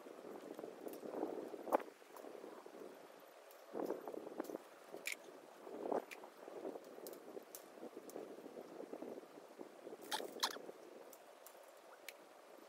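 Rustling of footsteps and movement on dry grass and fallen leaves, with a few light clicks and knocks from handling things at the work spot: a couple of single clicks, then a quick pair about ten seconds in.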